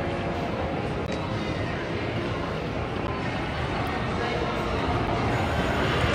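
Steady background din of a casino floor, with crowd chatter and slot machines blended into one even hubbub.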